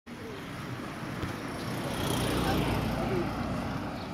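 Street ambience: a vehicle's low engine rumble swells to a peak about halfway through and then eases, with voices in the background.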